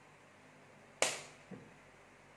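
A single sharp slap of hands striking together about a second in, followed half a second later by a much softer low knock.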